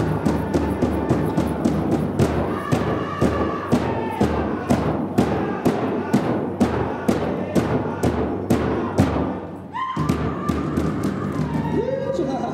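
Powwow drum group: a big drum struck in unison at about three beats a second, with the singers' voices over it. Near the end the drumming drops out briefly and one high voice leads off the next part of the song.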